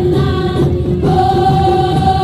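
A women's choir singing a song together with drum accompaniment, settling into a long held note about a second in.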